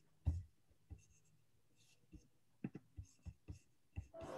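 A few faint, scattered clicks and taps from a computer mouse being moved and clicked.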